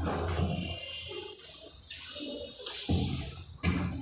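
A chalkboard duster wiping chalk off a board in rubbing strokes, with a couple of knocks near the end.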